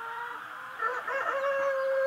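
Broody hen giving a low, drawn-out call that swells into a louder, longer held call about a second in. Faint high peeping of chicks sits under it.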